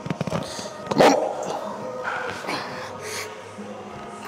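A man grunting and exhaling hard with effort while pulling a heavy set on a chest-supported row machine, the loudest grunt about a second in, over background music. A quick rattle of clicks from the machine comes at the very start.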